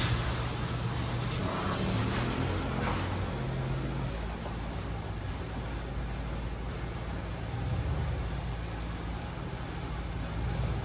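Pickup truck engine running with a steady low hum as it tows a fuel trailer in, under a haze of wind noise.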